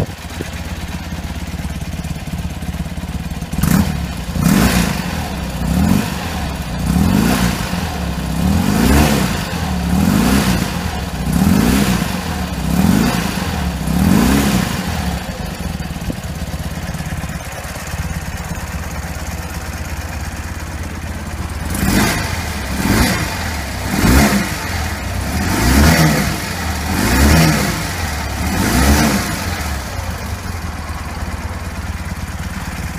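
BMW R80 G/S Paris Dakar's air-cooled 800 cc boxer twin idling on the stand and revved with quick throttle blips, each rising and falling, about one every second and a half. There are two runs of blips with a steady idle between them.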